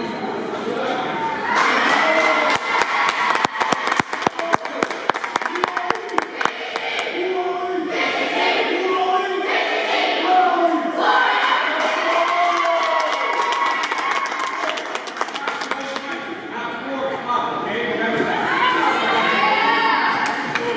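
Several voices of youth basketball players and their coach talking and shouting in a timeout huddle, echoing in a large gym. Runs of many sharp knocks come for several seconds from about two seconds in and again near the end.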